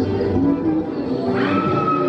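Dark ride's show soundtrack playing music. About one and a half seconds in, a whistle-like tone slides up and then holds, falling slowly.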